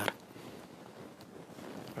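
Quiet, hushed room tone in a large hall, with a couple of faint ticks. A man's speech ends right at the start.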